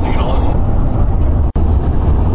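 Loud, steady road and engine rumble inside the cabin of a van driving at highway speed, cut off very briefly about one and a half seconds in.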